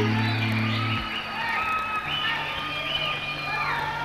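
Stage dance music stops abruptly about a second in, followed by a crowd cheering with whoops over a steady low hum.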